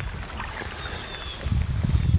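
Wind buffeting the microphone on a boat drifting down the river: an uneven low rumble that grows louder about one and a half seconds in.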